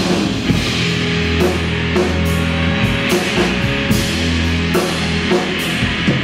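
Live rock band playing an instrumental passage: electric bass holding long low notes under electric guitar, with a drum kit hitting steadily and cymbals washing over the top.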